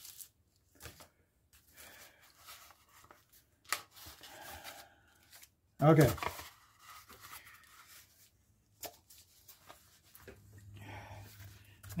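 Thick brown paper mailing envelope rustling and tearing in short, scattered spells as it is opened and handled, with a few light clicks.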